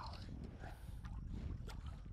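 Low rumble of wind and water lapping against a small fishing boat, with a few faint ticks.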